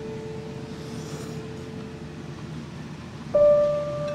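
Slow background music of long held notes. A new, louder note comes in a little after three seconds and slowly fades.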